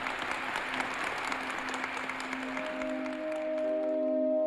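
Audience applause, a dense patter of clapping that thins out near the end, as film-score music of held, sustained tones fades in under it in the second half.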